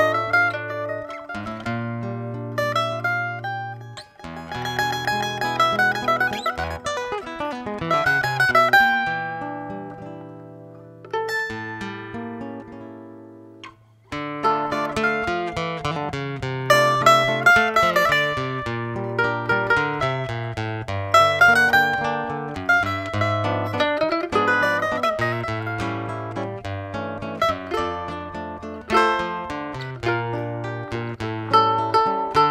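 Live instrumental duo of a small mandolin-like instrument picking the melody over a classical guitar's accompaniment and bass notes. The music slows and dies away near the middle, then starts up again about fourteen seconds in.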